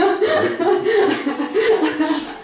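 People chuckling and laughing.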